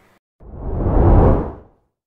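A whoosh sound effect: one deep rushing swell that builds for about a second and then fades out.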